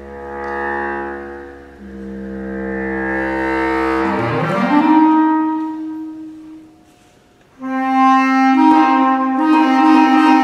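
Solo bass clarinet playing low sustained notes, then sweeping quickly upward about four seconds in to a held higher note. After a brief pause it starts a loud new phrase near the end.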